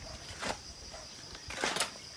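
Steel shovel blade digging into damp soil: two short scraping strikes about a second apart, the second louder.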